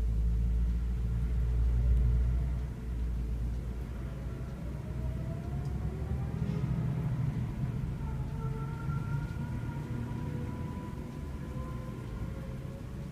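A low rumble, loudest for the first two to three seconds and then dropping back, with faint drawn-out tones above it.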